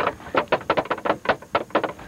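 Shoes tapped against a car's windshield in a quick, uneven run of about ten sharp taps, made to 'dance'.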